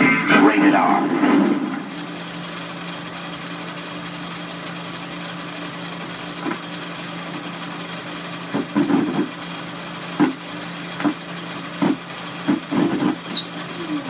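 The end of a film trailer's music and narration for the first couple of seconds, then a film projector running over blank leader: a steady hum with hiss from the projector's sound, broken by irregular pops and clicks in the second half.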